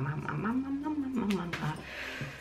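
A woman's drawn-out, closed-mouth hum, a thinking 'hmm' whose pitch rises and falls once, as she searches her memory for a name.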